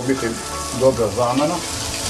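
A steady sizzling hiss from a steel pot of fish stew cooking on a burner, heard under a man's talk.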